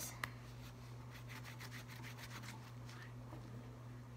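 Slime mixed with lotion being stretched and kneaded between the hands, giving faint sticky clicks: one just after the start, then a quick run of small clicks in the middle.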